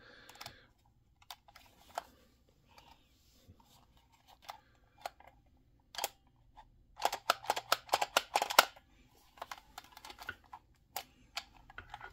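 A plastic action figure being handled: scattered light clicks from its articulated plastic flippers and joints, then a quick run of clicking and rattling about seven to nine seconds in, as the figure is picked up and turned over.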